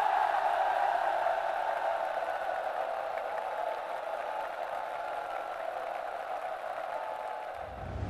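A huge crowd of soldiers clapping and cheering after a song, the ovation slowly fading. A low whoosh swells in near the end.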